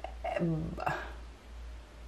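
A woman's voice making a few short, soft non-word sounds in the first second, over a low steady hum that carries on after them.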